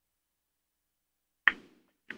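Dead silence, then a single sharp knock about one and a half seconds in that dies away quickly.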